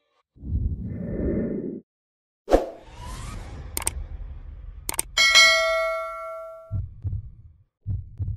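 Subscribe-button animation sound effects: a low rumble, a sharp hit, two mouse-style clicks, then a bell ding that rings out and fades over about a second and a half, followed by a few low thumps.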